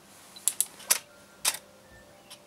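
A camera shutter and a solenoid water-drop valve firing in one triggered sequence: a quick pair of sharp clicks about a tenth of a second apart, then two more single clicks within the next second.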